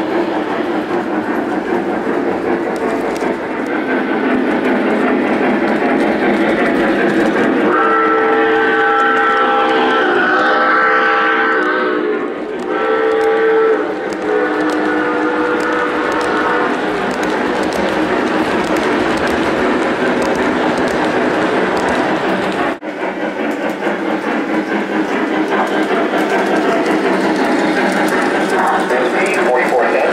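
Lionel O-gauge model Southern Pacific GS-2 steam locomotive and passenger cars running on three-rail track, a steady running noise, with the locomotive's electronic sound system blowing a multi-note steam whistle in several blasts from about eight to fourteen seconds in. The sound cuts out for an instant about three-quarters of the way through.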